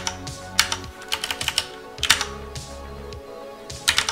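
Computer keyboard keystrokes: scattered key presses, with a quick run of several about a second in.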